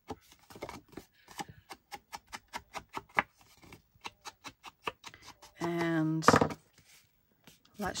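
An ink blending tool dabbed rapidly against the edges of a paper card to ink them: a run of quick soft taps, about four or five a second, that stops a little after five seconds in. A brief bit of voice follows about six seconds in.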